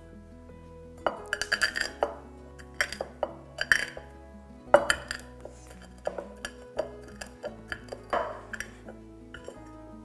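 A stainless saucepan pressed and ground against a wooden cutting board to crack whole cardamom pods: a run of sharp clicks, cracks and knocks, the loudest near the middle, over background music.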